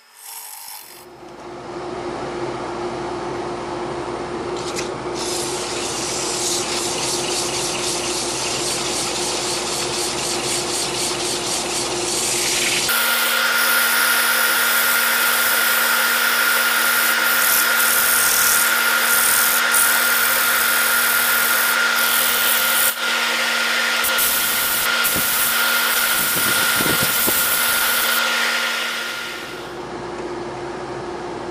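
Wood lathe spinning a sugar maple bowl while a gouge cuts the inside, a steady hiss of shaving over the lathe's hum. About halfway through it changes to a louder, brighter rubbing hiss with a higher hum as the spinning bowl is sanded by hand, and the sound drops away near the end.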